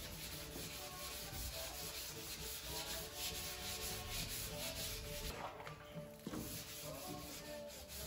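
Abrasive paper rubbed by hand back and forth over 2K filler primer on a car's steel rear fender: wet-sanding the filler smooth before painting, in quick, repeated strokes.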